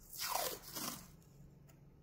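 Paper masking tape pulled off its roll: a short rasping rip in two pulls, falling in pitch, within the first second.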